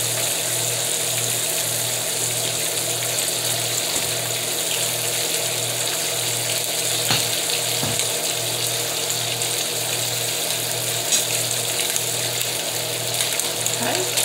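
Turkey bacon and a cheese omelet sizzling steadily on a griddle over a gas burner, with a low hum pulsing about twice a second underneath.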